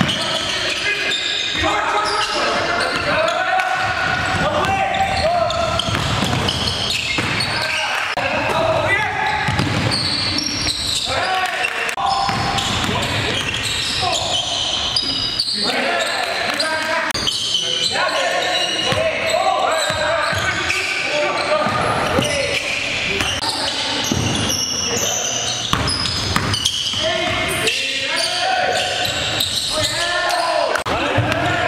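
Live game sound in a gymnasium: a basketball bouncing on the hardwood floor amid players' indistinct shouts and calls, echoing in the large hall.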